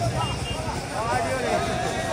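Large festival crowd: many voices shouting and calling over one another, with one voice holding a long call near the end.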